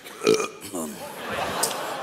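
A man's drawn-out throaty vocal noise: a short falling note, then about a second of raspy, rough sound.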